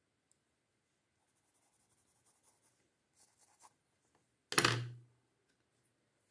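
Faint scratching of a pencil on paper in a few short strokes, then a single sharp knock about four and a half seconds in, with a short low ring after it.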